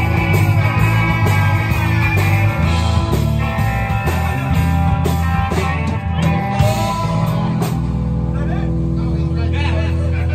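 Live rock band playing loud: electric guitar, bass and drum kit. Near the end the drumming thins out and the band settles on a long held chord.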